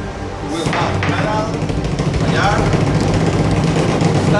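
Several voices talking and calling out over one another, with background music underneath.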